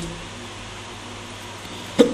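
Steady low room hum while a laptop RAM stick is fitted into its slot, ending in one sharp click as the module meets the slot.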